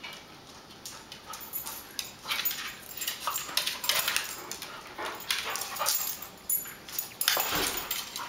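A pit bull and a small fox terrier–Yorkie mix play-wrestling on a tile floor: scuffling, claws clicking and skittering on the tile, and the dogs' play noises. It comes in irregular bursts from about two seconds in.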